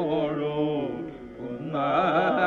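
Carnatic classical music in raga Yadukula Kambhoji: a single melodic line with wavering, sliding pitch ornaments (gamakas). It tails off and dips in the middle, then a new phrase begins near the end. The recording is old and narrow-band, which makes it sound slightly muffled.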